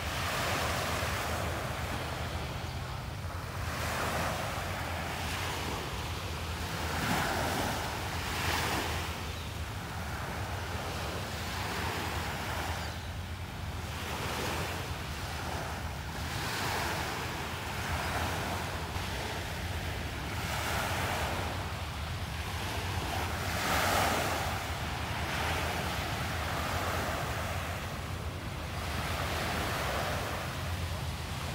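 Small waves breaking and washing up on a sandy beach, a soft rush of surf that swells and ebbs every few seconds.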